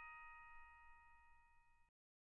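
A struck bell-like chime ringing out, several steady tones fading slowly and faintly until the sound cuts off near the end.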